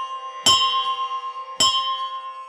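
A bell struck twice, about a second apart, each strike ringing on and slowly dying away.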